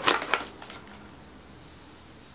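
A few short crinkles from a white paper bag being handled in the first half second, then quiet room tone.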